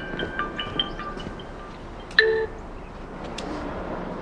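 Mobile phone ringtone playing a marimba-like melody of short bell-like notes, which stops about a second in. A single short, louder tone follows about two seconds in.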